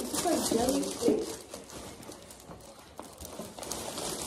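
Clear plastic gift wrapping crinkling and rustling as gifts are handled and unwrapped, a patter of small crackles. A voice talks briefly at the start.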